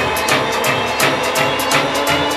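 Electro-swing dance track with a steady, bass-heavy beat, about four drum strokes a second.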